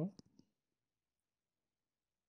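Two quick, faint computer mouse clicks within the first half second, then silence.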